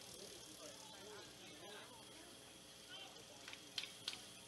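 Near silence with faint distant voices in the background, and a few short clicks near the end.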